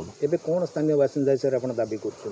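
A man speaking in short phrases, with a faint steady hiss behind the voice.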